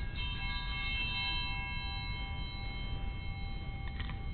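Altar bell rung at the elevation of the consecrated host, several clear tones ringing on steadily; a higher tone joins about one and a half seconds in.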